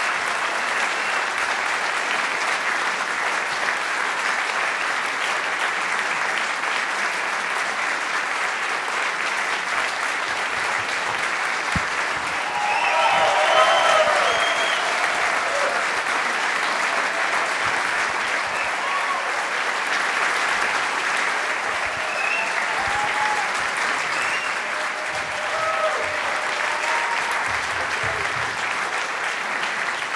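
Concert audience applauding steadily. About halfway through, a few cheers rise above the clapping and the applause briefly swells.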